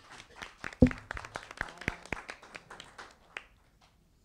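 Small audience applauding by hand, the claps thinning out and stopping near the end, with one louder thump about a second in.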